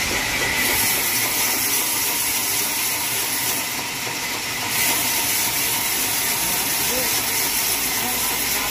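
Band sawmill blade cutting through a jackfruit-wood beam: a steady, high-pitched cutting noise that holds level throughout.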